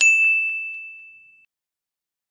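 A single bright ding, a high chime struck once that rings on and fades away over about a second and a half, marking the logo reveal.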